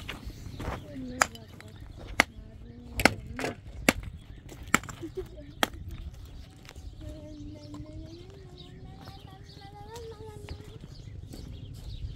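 Rough stones knocking against one another as they are lifted and set into a dry-stone wall: about six sharp, irregularly spaced clacks in the first half.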